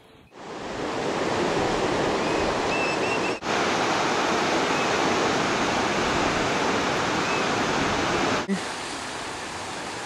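Steady rushing of ocean surf breaking over rocks, with a few faint chirps of birds. The sound cuts out briefly about three and a half seconds in and again near eight and a half seconds, and it is softer after the second break.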